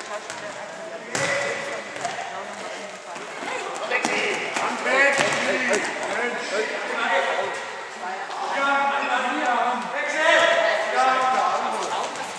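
Voices shouting and calling across a reverberant sports hall, with the sharp thuds of a ball being kicked on the hard indoor court, about a second in and again around five seconds in.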